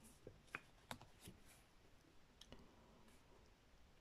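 Near silence with a few faint clicks and taps, most of them in the first half: oracle cards being handled as the next card is drawn from the deck.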